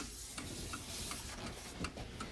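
Soft rubbing and rustling of handling, with a few faint, irregular clicks, as a hand reaches into a plastic container for a clock's winding key.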